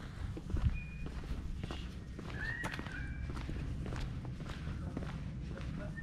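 Footsteps walking on a brick-paved driveway, with scattered light knocks of the steps.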